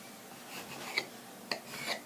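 Faint rubbing and light scraping of hands handling strips of strudel dough on a floured board, with a few soft taps about a second in and near the end.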